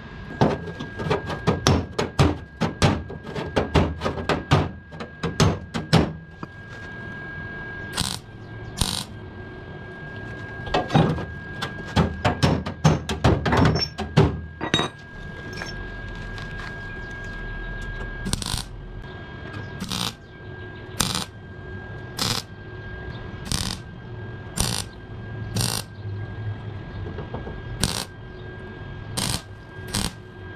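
A run of sharp metal knocks and taps, then short bursts of MIG welding about once a second: tack and stitch welds going into a sheet-steel patch panel.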